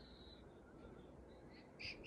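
Near silence: room tone, with a faint hiss fading out in the first half-second and a brief soft noise near the end.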